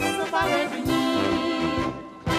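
Czech brass band (dechovka), with tuba, trumpets and clarinets, playing a lively dance tune over a rhythmic bass line. The playing dips away right at the end.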